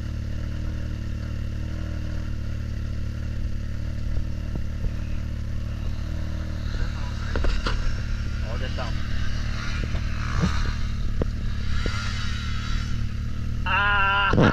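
Can-Am Maverick X3's three-cylinder engine idling steadily, with a KTM motocross bike revving in the distance. From about halfway the bike's engine note rises and falls and grows louder as it rides up the slope.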